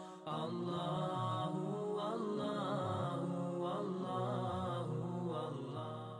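Chanted vocal music in the style of a nasheed, with layered voices holding long notes, dipping briefly just at the start.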